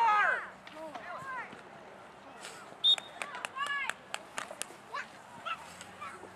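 Voices shouting across an open soccer field: a loud shout dies away at the start, then scattered distant calls, with one clearer call about three and a half seconds in. A handful of sharp clicks or knocks fall in the middle.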